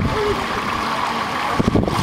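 Pool water splashing and sloshing as a small child is pulled back up out of the water by an adult, the churning picking up again near the end.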